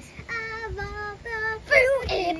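A young boy singing a few held notes with short breaks between them; the last note, near the end, is higher and louder.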